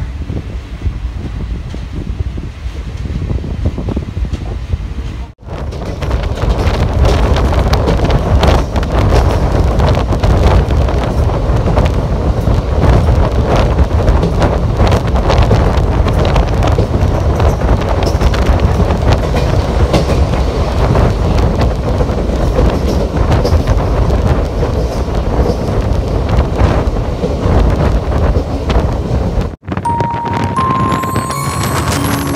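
Passenger train coach running on the rails, heard from an open window: a steady rumble of the wheels with clicks over the rail joints, and wind on the microphone. It is quieter for the first five seconds, then cuts abruptly to a louder run.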